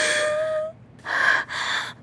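A woman gasping for breath in distress, three quick gasps, the first longer with a slight voiced edge, the way someone struggling to breathe in a panic sounds.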